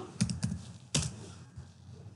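Computer keyboard keys being typed: a handful of separate keystrokes, the sharpest about a second in.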